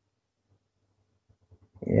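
Near silence: quiet room tone. Near the end a man's voice starts speaking with a drawn-out "ya".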